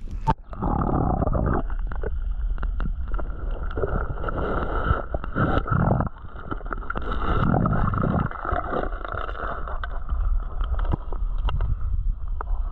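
River water heard through a camera held under the surface: a muffled, steady low rushing of the current with gurgling, swelling and fading as the camera is moved, and small knocks from handling.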